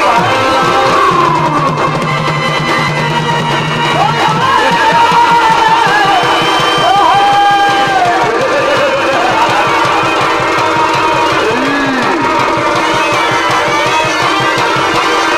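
Live Purulia Chhau dance accompaniment: a wind instrument's wavering, ornamented melody over fast, dense drumming and a steady drone, played loud through a loudspeaker.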